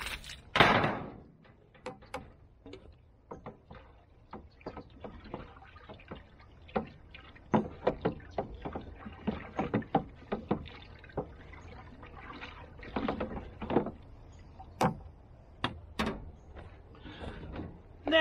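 A bucketful of water poured into a plastic barrel, a brief rush of liquid about a second in. Then a stick stirring in the barrel, with irregular knocks and sloshes.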